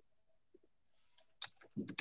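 A quick run of sharp clicks, five or six within about a second, starting about halfway in, with a duller low knock among them.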